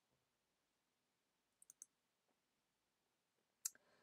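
Near silence with a few faint clicks: two close together near the middle and a single one just before the end.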